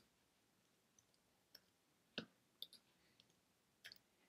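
Near silence with a few faint computer keyboard clicks, the clearest about two seconds in, as a line of code is copied and pasted twice.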